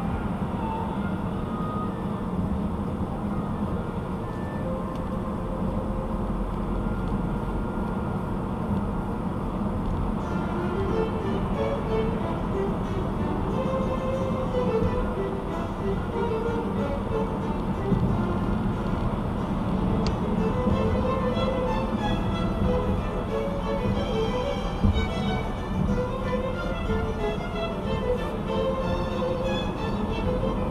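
Steady road and engine noise inside a car at highway speed, with music playing over it from about ten seconds in.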